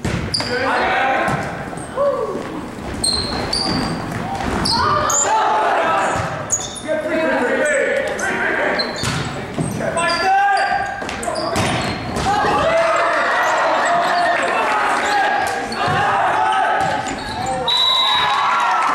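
Indoor volleyball rally: voices of players and spectators calling out through most of the stretch, over repeated short knocks of the ball being bounced and hit, echoing in a large gym.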